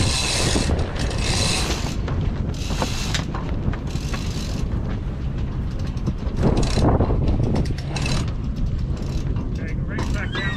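A Catalina 30's mainsail being hoisted by hand: the halyard rope rasps through the mast's sheaves in a series of pulls, with sailcloth rustling as it rises. Wind rumbles on the microphone underneath.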